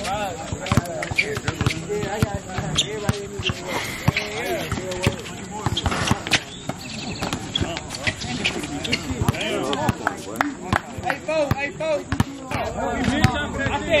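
A basketball bouncing and being dribbled on an outdoor hard court: repeated short sharp thuds at irregular intervals, over the voices of players calling out across the court.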